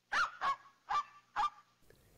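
Four short animal calls about half a second apart, each with a steady pitch.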